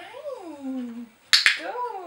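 A dog-training clicker clicking once, a sharp double click about one and a half seconds in, between two drawn-out voice sounds that fall in pitch.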